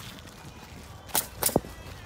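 Pneumatic roofing nailer firing two sharp shots about a third of a second apart, a little past a second in, nailing down ridge cap shingles.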